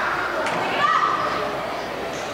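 Girls' voices calling and shouting in a reverberant indoor sports hall, with one louder call about a second in.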